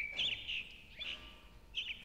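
Faint bird chirps: a few short, high calls in three small groups, the last near the end.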